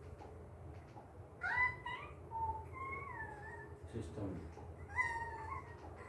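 High-pitched, cat-like calls, each rising and then falling in pitch, heard three times: about one and a half, three and five seconds in.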